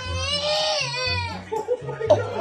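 A baby's long cry lasting about a second and a half, rising slightly and then falling in pitch, over background music with a low, repeating bass beat.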